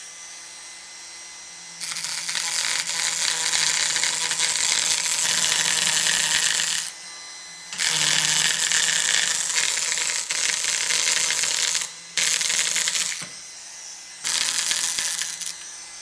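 Proxxon power carver with a small chisel tip cutting short grass strokes into basswood. The tool runs with a quiet hum and turns loud each time the blade is pressed into the wood, in four spells of about one to five seconds with short gaps between them.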